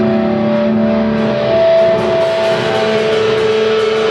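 Live rock band's electric guitars played through amplifiers, ringing out held chords and notes that shift in pitch about a second and a half in.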